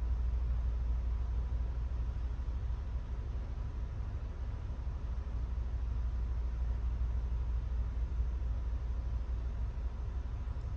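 Steady low background rumble with a faint hiss and a thin, steady high tone, unchanging throughout.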